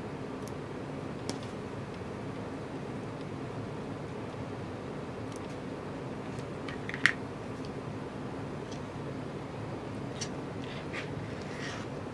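Small embroidery scissors snipping the threads between chain-pieced quilt pieces, with fabric being handled: a scattering of short, sharp clicks, the sharpest about seven seconds in, over a steady low hum.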